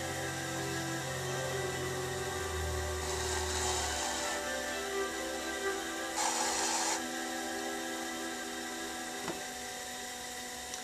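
Electric pottery wheel running with a steady motor whine, its hum shifting about three seconds in. A metal trimming tool scrapes clay slurry off the spinning wheel head in two short rasps, about three and six seconds in.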